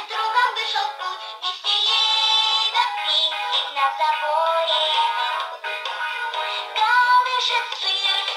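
A children's song, with singing and backing music, playing from the built-in speaker of a toy piano after a key is pressed in melody mode. It sounds thin, with no bass.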